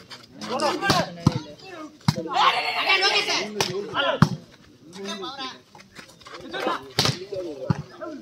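Volleyball rally: sharp slaps of hands striking the ball about half a dozen times, amid players' shouts and calls.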